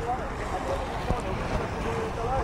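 Steady low rumble of wind buffeting the microphone aboard a sailing yacht under way, with a faint voice talking in the background.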